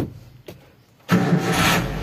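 Suzuki APV engine being started: a click, then about a second in the starter cranks briefly and the engine catches and settles into a steady idle.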